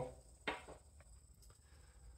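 Near silence: room tone, with one faint short click about half a second in and a couple of fainter ticks after.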